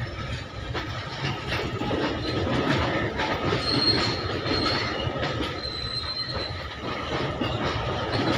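Loaded freight wagons of an Indian Railways goods train rolling past, the wheels knocking over the rails, with a thin high wheel squeal from a little before halfway to about three-quarters through.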